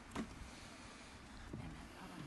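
Faint open-air background noise with a short thump about a fifth of a second in and a softer knock about a second and a half in.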